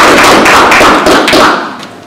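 Audience applauding with many rapid hand claps, loud and close, dying away about a second and a half in.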